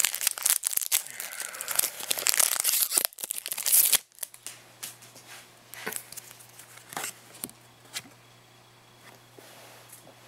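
A foil booster-pack wrapper being torn open and crinkled. The loud crackling lasts about four seconds and cuts off suddenly. After that come quieter, scattered flicks and soft clicks as the cards are handled.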